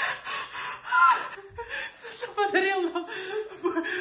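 A woman's excited voice, with wordless exclamations and laughter.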